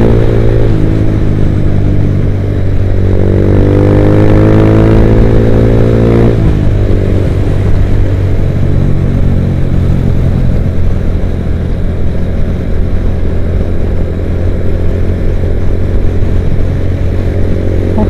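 Honda motorcycle engine heard from the rider's seat, rising in pitch as it accelerates for a few seconds, then dropping at a gear change about six seconds in and running on steadily at road speed. A steady rush of wind and road noise runs underneath.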